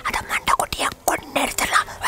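A man speaking in a breathy, whispered voice.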